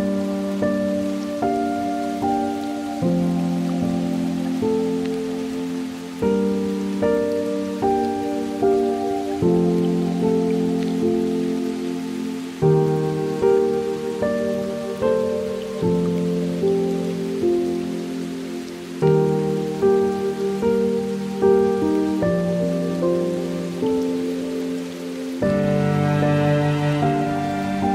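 Slow, gentle piano music with a steady rain sound beneath it; near the end the music briefly drops away and a new passage begins.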